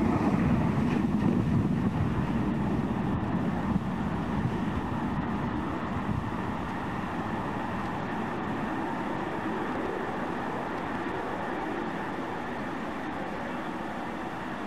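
Falcon 9 first stage's nine Merlin 1D engines firing in ascent, a steady rumbling roar that slowly grows fainter.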